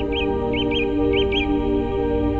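A songbird calling three quick double chirps, each pair about half a second apart, over steady ambient drone music.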